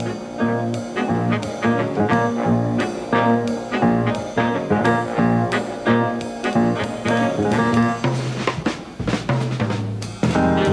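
Live big band jazz: saxophones and brass playing ensemble chords over a drum kit, with a steady, evenly repeating beat.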